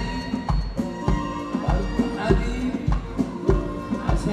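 Live Arabic band music: an instrumental ensemble over a steady drum beat, about one stroke every 0.6 seconds.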